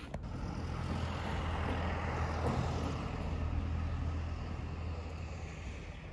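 A road vehicle passing by: a steady low engine hum under a rush of noise that swells over the first two seconds and slowly fades.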